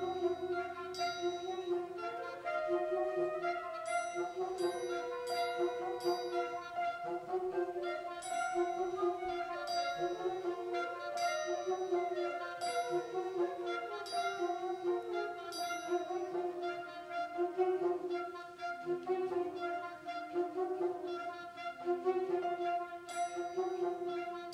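Concert wind band playing a piece: woodwinds and brass sustain and move through a melody, with a flute line and short, sharp, high percussion strikes recurring.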